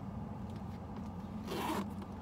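A zipper on a Coach leather handbag being pulled once, quickly, near the end, giving a short zip.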